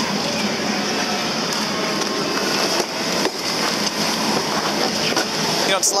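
Steady mechanical running noise of a chairlift's station machinery with a constant high hiss, and a couple of soft knocks near the middle as the chair rides out along the cable.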